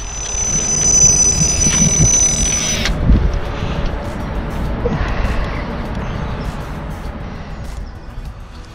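Electronic carp bite alarm sounding a continuous high tone as a carp runs with the bait, cutting off suddenly about three seconds in. After that comes heavy rumbling wind and handling noise while the rod is bent into the hooked fish.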